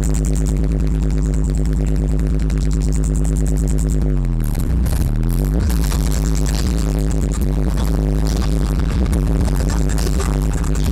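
Loud live electronic music played over a festival PA, with a heavy, steady bass and no vocals. About four seconds in, the synth swoops down in pitch and then sweeps back up.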